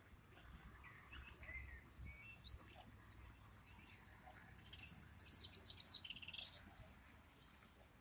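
Faint songbird chirps and twittering, with a busier burst of quick high notes about five seconds in.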